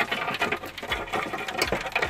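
Mud crabs dropping from a crab net into a metal basin of other crabs, with a rapid, irregular clatter of clicks and knocks against the metal.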